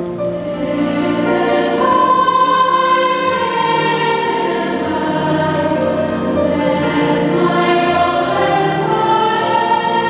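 Treble choir of girls and young women singing held notes, with piano accompaniment, in a reverberant church.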